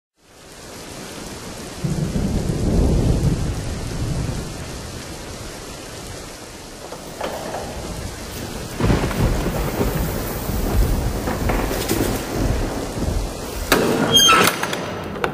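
A steady rushing noise that fades in, with deep rumbles swelling about two seconds in and again about nine seconds in.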